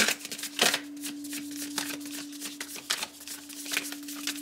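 A deck of tarot cards being shuffled by hand, a quick irregular run of card flicks and slaps. A steady low hum runs underneath.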